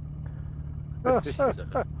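Royal Enfield Interceptor 650's parallel-twin engine idling with a steady low hum while the bike waits in a queue. About a second in, a man laughs over the helmet intercom, louder than the engine.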